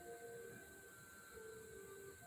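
Faint choir of women's voices singing soft, held notes that step from pitch to pitch, heard through a television's speakers.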